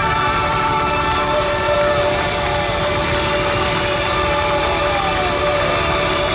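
Live band holding a long sustained chord at the close of the song, with the audience cheering and applauding over it.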